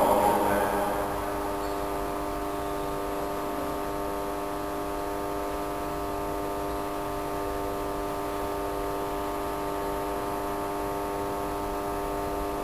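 Church organ holding one soft, steady chord of several tones.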